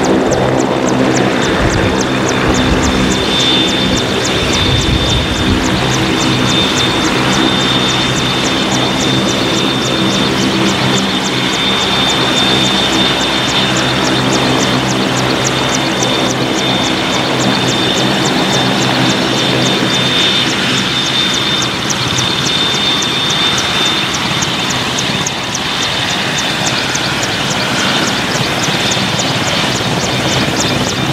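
MCH-101 (AW101 Merlin) helicopter running on the ground with its rotor turning: a steady high turbine whine from its three turboshaft engines over a low engine hum, with a fast, even ticking of the rotor blades.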